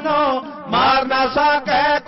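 Male voices singing in Sikh dhadi style with sarangi accompaniment. The voices break off briefly in the first second and then resume.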